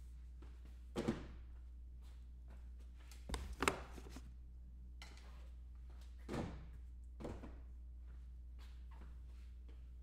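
A few soft knocks and thuds from something being handled, over a steady low hum: one about a second in, a louder short cluster around three and a half seconds, and two lighter ones later.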